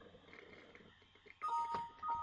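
Windows alert chime, two steady tones sounding together, starting suddenly about one and a half seconds in as an information dialog box pops up. It signals that the simulation has finished successfully.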